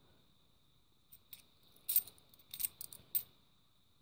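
Cupronickel fifty-pence coins clinking against each other in the hand as they are sorted, in several short bursts of light clicks from about a second in until just past three seconds.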